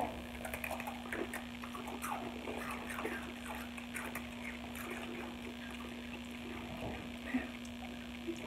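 Several people chewing Takis rolled tortilla chips, faint crackly mouth sounds over a steady low hum.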